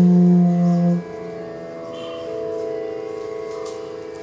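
Bass bansuri (bamboo flute) holding a long, steady low note in an alap of raag Parmeshwari. The note ends about a second in, and a softer steady drone carries on underneath.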